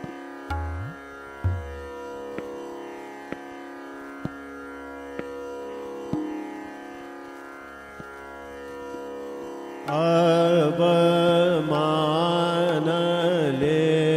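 Hindustani classical music in Raag Bhupali: a steady drone with sparse tabla strokes, one of them with a low bass-drum pitch glide, and light taps. About ten seconds in, a voice enters loudly, singing the raga melody with sliding ornaments over the drone.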